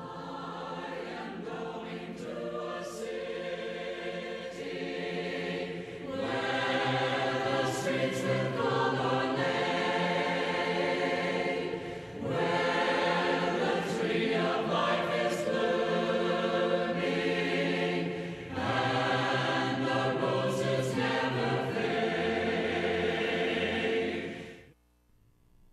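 A choir singing a hymn in phrases about six seconds long, each ending in a short breath-like dip. The first phrase is quieter and the rest sing out louder.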